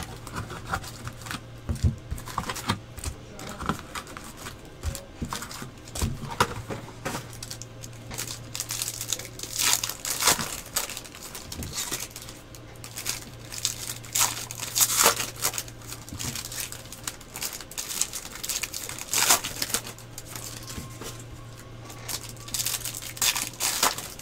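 Foil trading-card pack wrappers being torn open and crinkled, in irregular crackling bursts, over a steady low hum.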